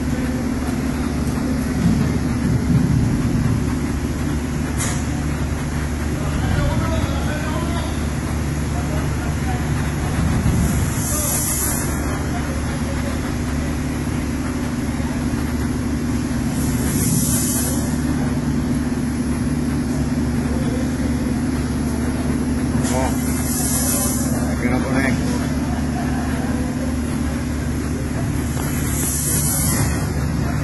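Steady drone of factory machinery with several constant low tones, and a short hiss of air about every six seconds. Voices can be heard faintly in the background.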